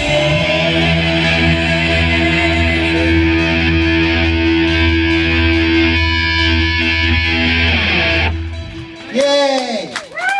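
A live heavy rock band's electric guitars and bass hold one sustained closing chord with a heavy low end. It cuts off about eight seconds in. Then comes a short run of swooping, rising-and-falling pitched sounds.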